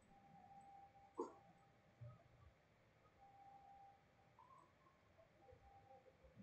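Near silence: faint room tone, with one brief soft tap about a second in.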